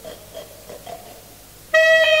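Solo alto saxophone in contemporary music: after a quiet stretch with a few faint, short soft sounds, a loud held high note begins near the end, steady in pitch.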